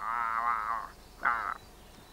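A high, wavering warble, a person's voice making a creature noise for the toy monsters. It stops just under a second in and comes back as a short second warble a little later.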